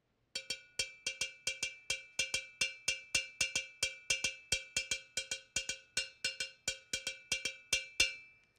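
A hand-held conical metal bell struck with a wooden stick, playing a repeating West African timeline pattern: sharp ringing strokes, about four to five a second in an uneven, repeating rhythm. The last stroke rings on briefly near the end.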